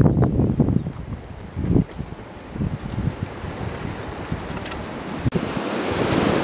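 Wind buffeting the camera's microphone in low, uneven gusts, with a single sharp click about five seconds in.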